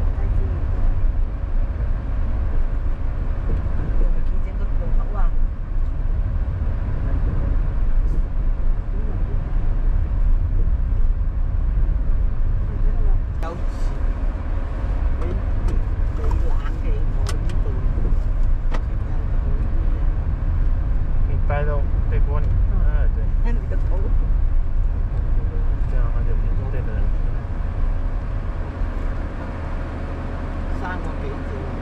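A car being driven at city-street speed: a steady low rumble of engine and tyre noise, with a faint steady hum and a few brief clicks in the middle.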